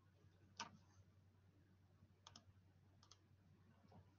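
Near silence with a low steady hum, broken by a few faint clicks of a computer mouse: one about half a second in, a quick pair just past two seconds, another pair near three seconds, and one just before the end.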